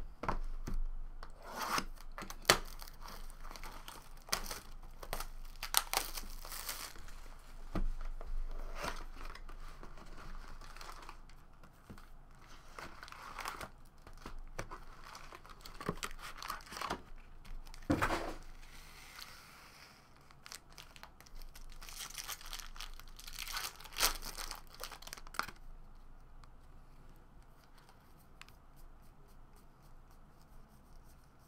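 Foil trading-card pack wrappers being torn open and crinkled, a series of sharp rips and crinkling bursts, along with a cardboard hobby box being handled. Near the end it turns to quieter soft ticks of cards being handled.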